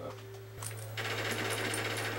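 Rapid automatic gunfire from a shooter video game playing through a TV speaker, starting about half a second in and getting louder a second in, over a steady low electrical hum.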